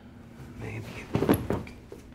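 A few sharp knocks in quick succession, a cluster just after a second in and another about half a second later, like a hard object being handled or set down.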